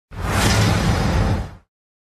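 Edited-in intro sound effect: a whoosh over a deep low rumble that fades out about a second and a half in.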